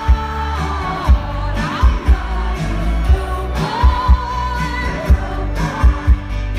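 Live pop song played over a festival PA: a female lead vocal over a band with heavy bass, drums, keyboards and acoustic guitar. The drum hits are spaced well under a second apart.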